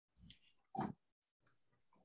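A mostly quiet pause with two faint, brief noises: a low bump and then, just under a second in, a short breath-like sound from the man speaking into his microphone.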